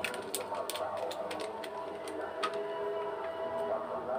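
Small plastic food tub being handled and its lid worked open by hand: sharp plastic clicks and crackles, a quick run of them in the first second and then scattered ones.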